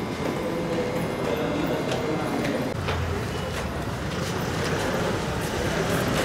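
Footsteps of a small group walking, a few scattered steps, with voices murmuring in the background.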